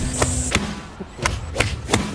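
Golf clubs striking balls, about five sharp clicks in quick succession.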